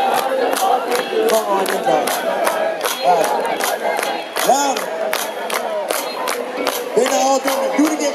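Large festival crowd shouting and singing together, many voices overlapping, with a steady ticking beat about four times a second underneath.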